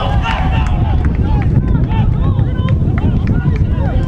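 Football players shouting and calling to each other on an outdoor pitch just after a goal, in short separate calls, over a steady low rumble.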